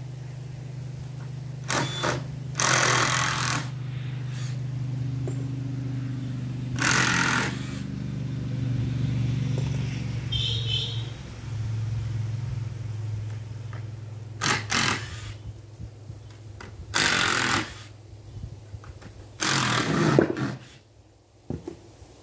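A small motor hums steadily and dies away about halfway through, while loud bursts of about a second each break in five or six times at uneven intervals, from power-tool work on a wooden structure.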